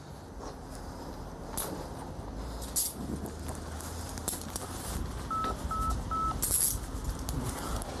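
Three short, equal electronic beeps about half a second apart, a little past the middle. Around them come handling noise and a few brief sharp metallic clicks as a suspect's wrists are handcuffed.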